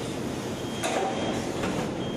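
Rotor aluminium die-casting machine running with a steady mechanical noise and a faint high whine. Two short metal clanks come through, the louder just before halfway and another near the end.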